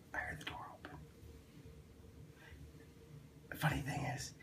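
A man laughing in short, breathy bursts during the first second, then again, louder, near the end.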